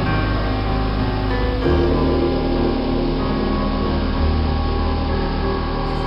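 Soft background music with sustained piano and keyboard chords that change about two seconds in.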